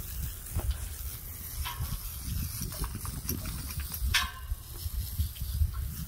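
Water from a garden hose spraying onto a horse's wet coat: a steady hiss, with a low uneven rumble underneath and a short sharp sound about four seconds in.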